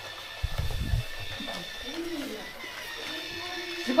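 Small electric motor of a battery-powered toy train whining faintly and steadily as it drives along a wooden floor. There is a low thump about half a second in, and soft pitched voice sounds follow shortly after.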